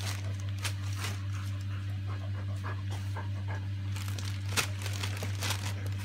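A dog panting while wrapping paper rustles and tears as the dogs work at a present, over a steady low hum.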